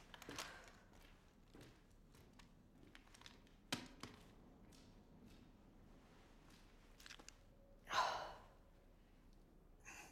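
Quiet room tone with a single sharp tap a little under four seconds in, then a person's sigh about eight seconds in.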